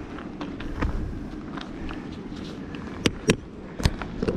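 Footsteps on gravel and camera handling: a steady low rumble with scattered clicks, and a few sharp knocks about three seconds in.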